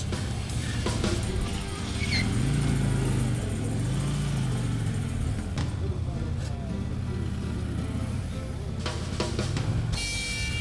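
Harley-Davidson Road King police motorcycle's V-twin engine at low speed through a tight cone course, its pitch rising and falling with the throttle. Background music plays over it.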